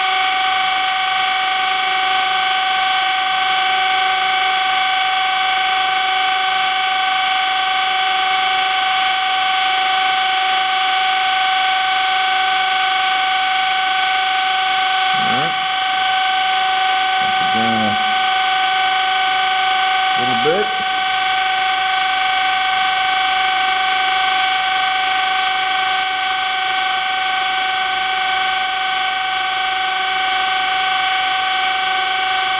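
Surface grinder running with a steady high whine while its wheel cylindrically grinds the diameter of an edge finder turning in a Harig Grind-All fixture. A few short sliding tones rise over the whine around the middle.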